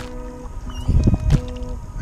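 Kayak paddle strokes splashing in shallow water, with a couple of louder splashes about a second in, over background music with held notes.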